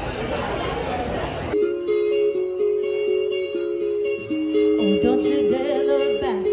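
Clean semi-hollow electric guitar playing slow, sustained melodic notes and chords. The first second and a half is covered by a loud burst of noisy room sound before the guitar comes through clearly.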